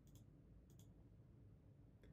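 Near silence with two faint clicks about half a second apart: computer mouse clicks advancing the on-screen page.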